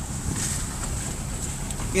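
Steady low rumble of a four-wheel-drive's engine and tyres on a dirt track, heard from inside the cabin.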